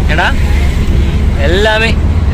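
Car driving, heard from inside the cabin: a steady low rumble of engine and road noise, with two short spoken phrases over it.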